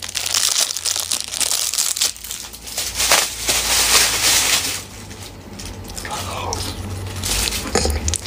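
Clear plastic ice-pop wrapper crinkling and crackling as it is pulled open and stripped off the frozen ice pop. The crinkling is dense through about the first five seconds, then it goes quieter.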